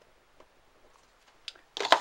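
Faint scratching of a pen writing on paper, then a short click about one and a half seconds in; a man's voice starts just before the end.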